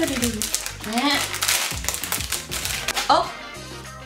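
Plastic candy wrapper crinkling and tearing as it is pulled open by hand, a dense run of fast crackles, over background music.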